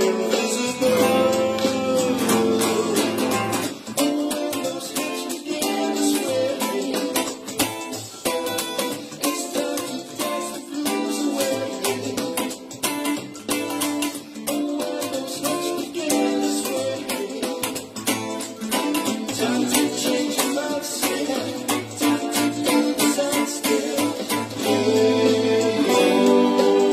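Funk-soul band track with a Reverend electric guitar playing a choppy rhythm part over it.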